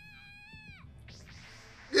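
A girl's voice in an anime crying out "Soldier-san!", one long high wail held on a steady pitch that falls away just under a second in, followed by a short breathy sound.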